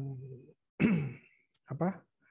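A man talking haltingly, broken by a short breathy sigh with a falling pitch about a second in.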